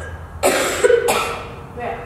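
A woman coughing twice in quick succession about half a second in, with a smaller cough or breath near the end.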